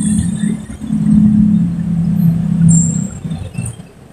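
Low, steady engine hum of a motor vehicle that swells about a second in and fades near the end, with a brief high squeak a little before the fade.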